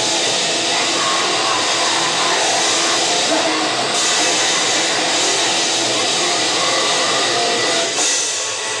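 Grindcore band playing live at full volume: a dense, steady wall of distorted guitar and drums.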